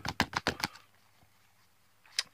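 Thin paper sticker-pack pieces flicked and fanned between fingers: a quick run of about six sharp paper clicks that stops under a second in.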